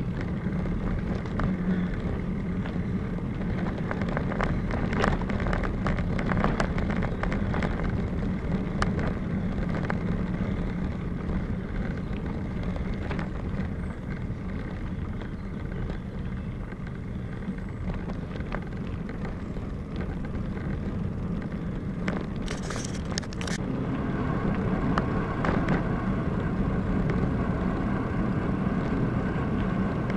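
Bicycle riding heard from a bike-mounted camera: tyres rolling over gravel and asphalt, with wind on the microphone and scattered clicks and rattles, including a brief sharper rattle about three-quarters of the way through.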